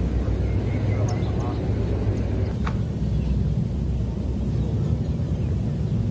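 Outdoor field ambience: a steady low rumble with faint distant voices in the first second or so, and a single brief sharp sound near the middle.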